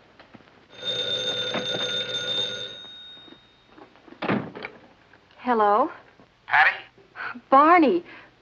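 An electric bell rings once for about two seconds, starting a little under a second in, followed by a short thud about four seconds in.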